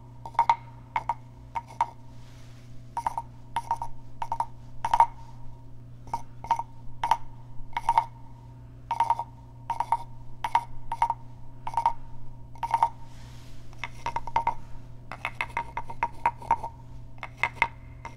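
Carved wooden frog percussion instrument played with its wooden stick: separate hollow knocks, each ringing with a short pitched tone, at an irregular pace of about one a second, with quicker runs of clicks near the end.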